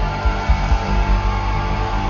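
Live rock band playing loud in an arena: distorted electric guitars with a held note ringing above the mix, bass and repeated drum hits, heard from the audience.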